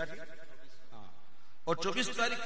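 A man's voice chanting a naat: a held note fades out in the first half, then the voice comes back in strongly near the end with a wavering pitch.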